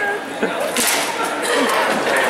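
A rattan tournament sword swung once through the air, a short swish about a second in, over crowd chatter.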